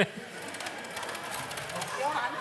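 Electric hand mixer running steadily, its beaters whisking in a bowl.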